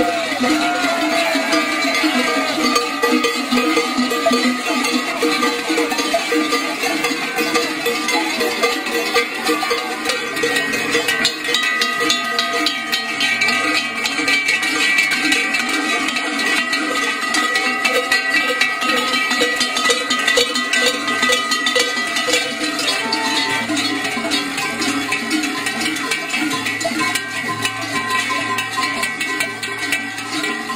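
Many large cowbells worn strapped to the body clanging together without a break as their wearers move, a dense ringing din with a few bell tones standing out.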